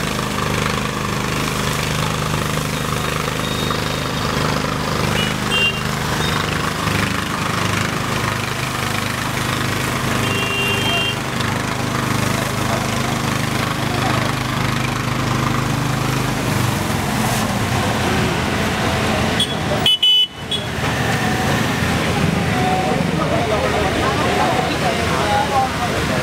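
Busy roadside: people talking over a steady engine hum, with short vehicle horn toots about five, ten and twenty seconds in. The engine hum stops about seventeen seconds in.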